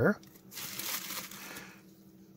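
Plastic packaging crinkling and rustling as it is handled, for about a second.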